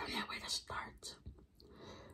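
A woman's faint whispering, several short breathy snatches with pauses between them.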